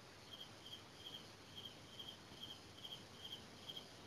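Faint insect chirping: short high-pitched calls repeating at about two to three a second, over a low background hiss.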